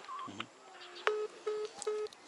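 Smartphone on speakerphone sounding the busy tone as the call ends. A brief higher beep comes near the start, then three short, evenly spaced beeps in the second half.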